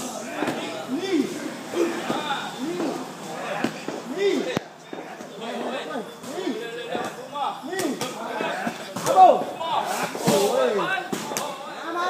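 Muay Thai sparring: gloved punches and kicks landing as sharp slaps and thuds several times, the loudest about nine seconds in, over indistinct voices.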